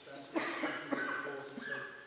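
A person coughing: two sudden loud coughs about half a second apart, louder than the talk around them.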